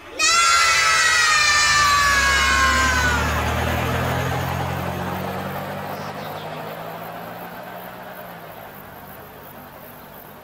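A long, high-pitched cartoon shout of "Nooo!", dropping slightly in pitch over about three seconds and then trailing away, over a low cartoon car engine rumble that fades out as the car drives off.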